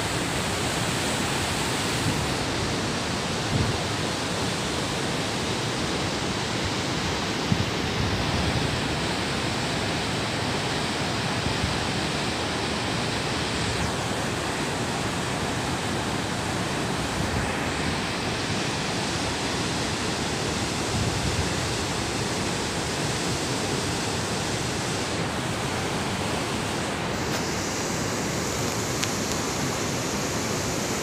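The Alaknanda River's whitewater rapids rushing over boulders, a steady, loud, unbroken rush of water.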